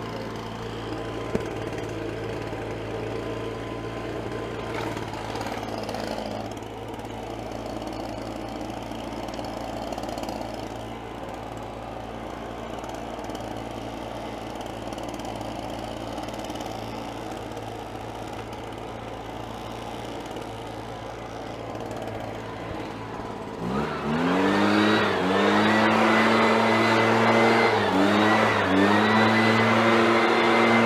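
Husqvarna 130BT backpack leaf blower's two-stroke engine idling steadily, then throttled up about 24 seconds in to full blowing speed, rising sharply in pitch and loudness, with a couple of brief dips in speed near the end.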